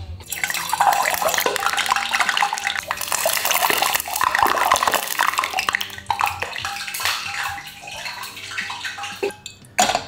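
Hot rice bran oil in a small stainless steel pot spitting and crackling hard because a drop of water has got into it: a dense sizzle full of fine pops. It thins out and stops shortly before the end.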